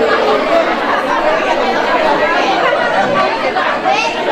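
Audience chatter: many voices talking over one another at once, with no single speaker standing out.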